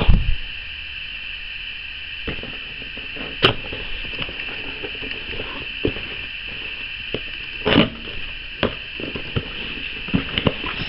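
Scissors snipping and slicing through packing tape along the seam of a small cardboard box, with scattered short clicks and scrapes as the blades and box are handled, over a steady background hiss.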